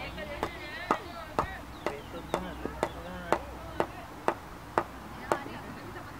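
Steady hand claps, about two a second, stopping about a second before the end. Voices call out in the first second or so.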